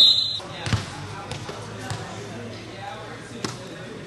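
A referee's whistle blows one short, sharp blast right at the start, just after a shout. Then a basketball bounces on the hard court three times, about a second or more apart, over faint voices.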